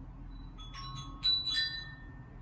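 A cluster of bright, bell-like clinks in the second half, each ringing on briefly, the loudest a little past the middle.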